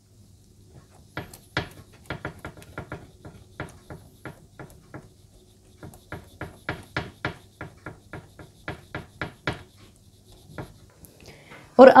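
Fingertips pressing dimples into soft naan dough on a metal baking tray: a run of short soft taps, about three a second, from about a second in until near the end.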